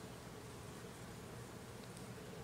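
A faint, steady low buzzing hum.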